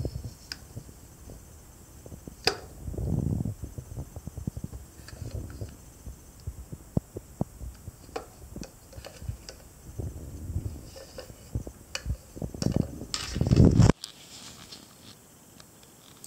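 Handling of a small die-cast miniature cash register on a stone countertop: scattered light clicks and knocks, with low rumbling handling noise on the microphone. The rumble is loudest near the end and cuts off suddenly.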